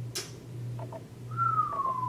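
A man whistling one long note that glides slowly downward, starting a little over a second in. A steady low hum lies underneath.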